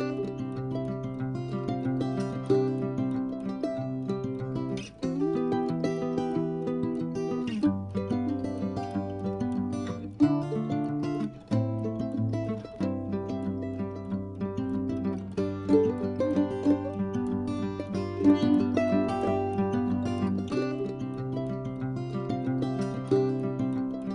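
Instrumental background music led by a plucked, guitar-like string instrument over a bass line, starting abruptly at the outset.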